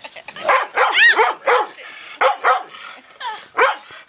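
A dog barking repeatedly, a run of short barks about two a second.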